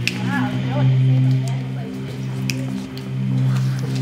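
Several voices holding a low, steady droning hum together, with short wavering higher vocal sounds about half a second in and a few sharp knocks or claps.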